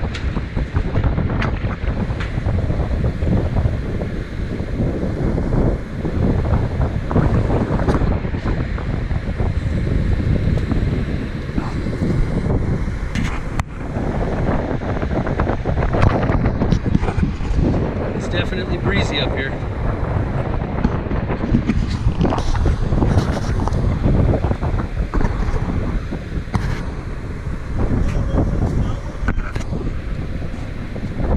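Wind buffeting the camera microphone, loud and gusty, rising and falling throughout. Briefly, a little past halfway, a faint higher-pitched sound comes through.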